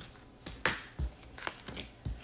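Tarot cards being handled and turned over on a table: a few short clicks and rustles of card stock.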